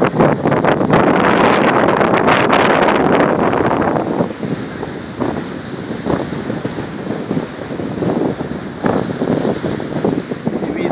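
Wind buffeting the microphone over the sound of surf breaking on a beach, heaviest for the first four seconds, then easing into lighter gusts.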